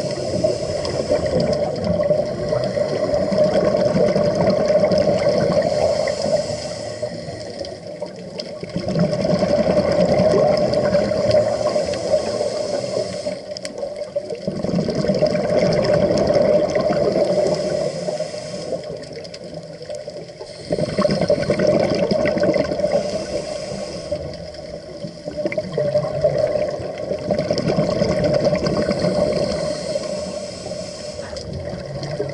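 Scuba divers' exhaled regulator bubbles heard underwater, in about five long surges a few seconds each with short quieter gaps between, following the breathing.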